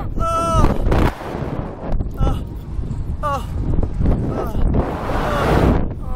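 Wind rushing and buffeting the microphone as the riders of a SlingShot ride swing through the air. Over it, a laugh at the start and a few short yelps from the riders.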